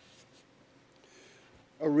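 A near-quiet room with a few faint paper rustles from the lectionary's pages. Near the end a man's voice starts reading aloud.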